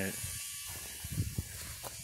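Handling noise from a phone camera being moved: a few soft knocks and rubs a little past a second in and a sharp click near the end, over a low steady hiss.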